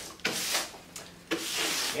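A hand tool swept across the top of a wooden workbench in two strokes, each about half a second long.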